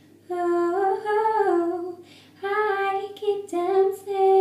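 A woman singing unaccompanied: two sung phrases that bend up and down in pitch, with a breath taken between them about halfway through.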